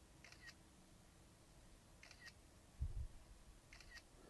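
Faint camera-shutter sound effect from the DJI Fly app on the controller's phone, clicking three times at even spacing of just under two seconds as the DJI Mini 2 takes the photos for a panorama. A soft low thump comes a little before the third click.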